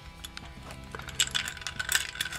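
Small metallic clicks and rattles, thickest from about a second in, as a Twinplex razor-blade stropper's metal case is handled and turned. Steady background music plays under them.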